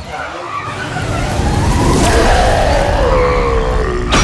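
Cartoon race-car sound effects: a wheel spinning and skidding, with an engine sound that builds and then falls in pitch over the last two seconds.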